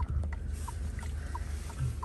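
A steady low rumble with a faint hiss over it, and a few brief faint tones dotted through.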